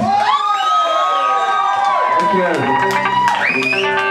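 A rock song stops and the crowd cheers and whoops, many voices rising and falling in pitch over one another, while a single guitar tone rings on steadily.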